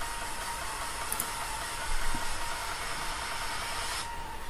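Steady hiss with a low hum underneath and a faint steady tone, with a brief louder bump about two seconds in.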